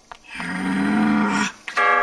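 A low, rasping growl-like sound lasting about a second, then a held musical chord that comes in near the end.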